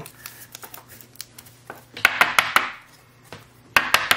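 Plastic trading-card sleeve and holder being handled as a card is sleeved up: scattered light clicks, then a quick run of several sharp clicks and taps about two seconds in.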